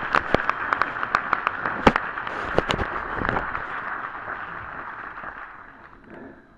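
Theatre audience applauding: a dense patter of many hands with single sharp claps standing out. It dies away over the last few seconds.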